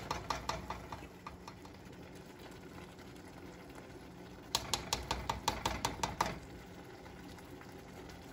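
A spoon clicking and scraping in quick strokes, several a second, as tahini is spooned from a jar and stirred into a pot of curry sauce. The clicks trail off about a second in, leaving a soft steady hiss, and come back in a run of about two seconds past the middle.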